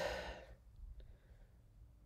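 A person sighs briefly, a short breathy exhale right at the start, followed by near quiet with one faint click about a second in.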